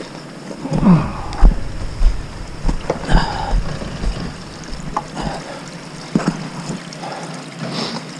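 Footsteps on loose rock and gravel, low thumps about twice a second for a few seconds, with wind buffeting the microphone.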